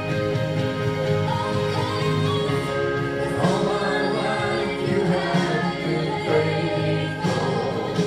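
A man and a woman sing a gospel worship song as a duet over a steady instrumental accompaniment. The voices come in about two seconds in, after a short instrumental passage.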